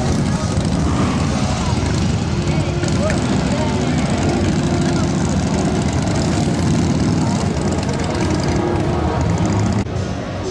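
A motorcycle engine running close by, a steady low rumble throughout, with voices of a crowd mixed in.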